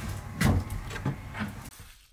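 A door being handled: a few knocks and rattles, the loudest about half a second in, over a steady low rumble. The sound drops away abruptly near the end.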